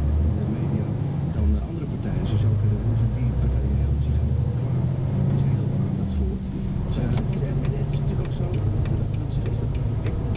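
Truck engine and cab noise from inside the cab while driving, a deep drone whose pitch shifts a few times. A run of light ticks comes in during the last few seconds.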